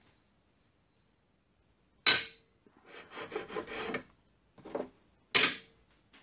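Metal tailstock footplate and hand tools being handled and set down on a steel workbench and mini lathe bed. There is a sharp metallic clack about two seconds in, then about a second of rubbing and scraping, a light knock, and another sharp clack near the end.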